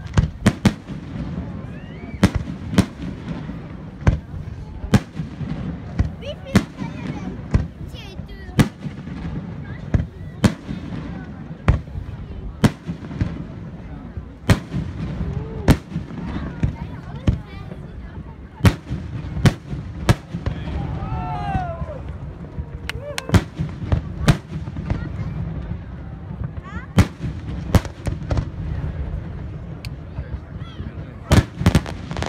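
Aerial firework shells bursting: an irregular string of sharp bangs about once a second, with fewer bangs for a few seconds past the middle, over a steady low background rumble.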